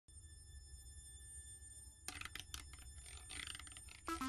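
Very faint opening of an intro: a low hum with thin, steady high tones, then a few soft clicks and a gradual swell from about two seconds in, leading into the logo music.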